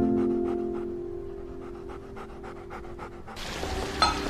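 A Labrador retriever panting quickly and evenly, over soft music with long held notes. A little before the end the panting stops and a fuller background hiss takes over.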